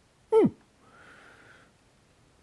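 A man's short "hm", falling steeply in pitch, then a faint breathy hiss of about a second, like a long exhale.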